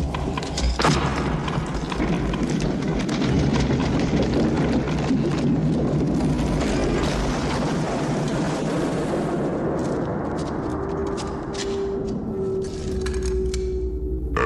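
Film soundtrack of a dense din of crashing and booming effects with music underneath. About ten seconds in it thins to separate knocks, and a steady held tone comes in.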